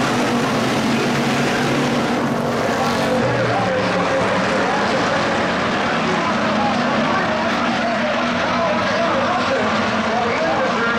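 A pack of Hobby Stock race cars running on a dirt oval, several engines blending into one loud, steady drone.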